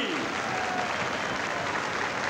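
Large audience applauding.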